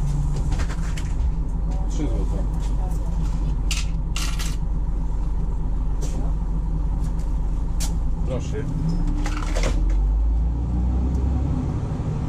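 Diesel engine of an articulated DAB city bus idling at a stop, with scattered sharp clicks and rattles from the cab. Near the end the engine note rises as the bus pulls away.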